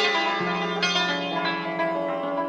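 Persian setar playing in the Shushtari mode: plucked notes ringing on over a sustained low string.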